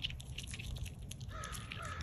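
Eastern chipmunk eating sunflower seeds from a hand: quick, irregular sharp clicks of seed shells being cracked and nibbled. Past halfway, a bird calls three times in the background.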